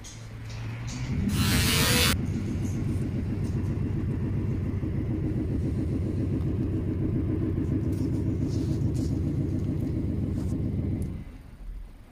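Low, steady engine rumble, starting with a short hiss about a second in and cutting off about eleven seconds in.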